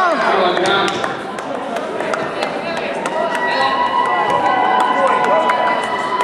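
Echoing sports-hall ambience at a karate competition: scattered voices and chatter, with short sharp knocks and slaps from the bouts on the mats. About halfway through, a steady high tone comes in and holds.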